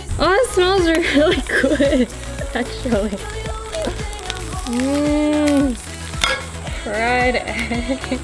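Raw egg sizzling as it fries on a red-hot steel knife blade, heard under background pop music with a singing voice that holds one long note about five seconds in.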